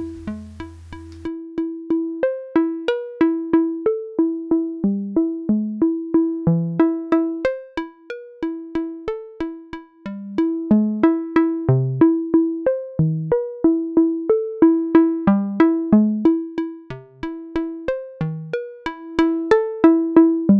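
Software modular synthesizer (Reaktor Blocks West Coast DWG oscillator through a low-pass gate) playing a sequenced run of short plucked notes in a steady even pulse. The pitches hop around as the sequencer's steps are dialed in to form a melody.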